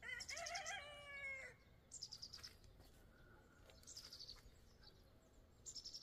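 Faint songbird calls: a wavering whistled call for the first second and a half, then short, high, rapid trills repeated about every two seconds.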